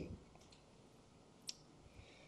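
Near silence: room tone, with one faint short click about one and a half seconds in.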